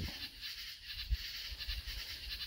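Faint background nature ambience under the voice-over: a soft, even hiss with a low rumble.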